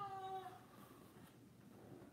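A cat meowing once: a single drawn-out call that ends about half a second in.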